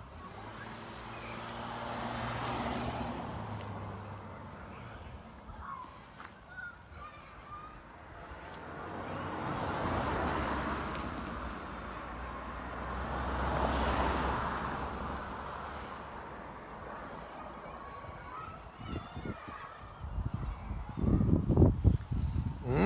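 Cars passing on a road, one after another: three swells of tyre and engine noise that rise and fade, the first with a low engine hum. Near the end, loud rumbling buffets on the phone's microphone.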